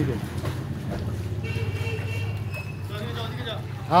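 Faint voices over a low steady hum.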